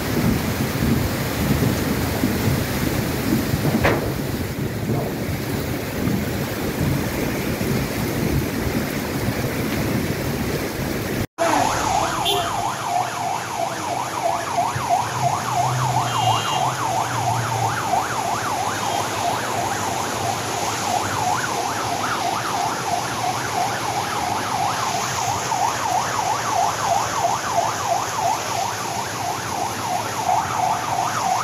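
Muddy floodwater rushing in a steady torrent with rain falling. After a sudden cut, a siren wails in a fast, even rise and fall over the wash of water on a flooded street.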